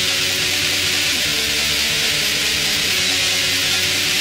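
Raw, lo-fi black metal: heavily distorted electric guitar in a dense, trebly wall of noise over bass and drums, steady in loudness, with its chords changing about every second.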